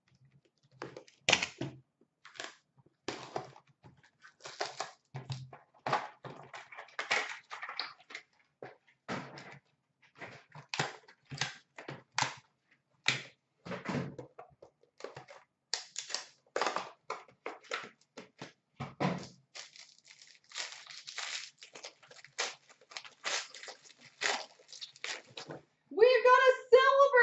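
Hands working a hockey card box and a pack wrapper: irregular crinkling, rustling and light taps as the pack is torn open and the cards pulled out, busier near the end.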